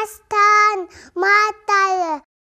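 A young girl singing unaccompanied in short, held phrases with brief pauses between them.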